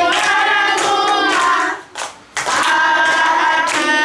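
A class of young children singing a song together, clapping along, with a brief break about two seconds in.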